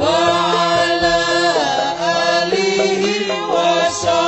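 A singer chanting a long, gliding melismatic vocal line over Javanese gamelan accompaniment with steady held tones, the pitch dipping and rising again about halfway through.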